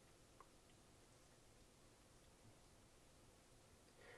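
Near silence: room tone, with one faint tick about half a second in.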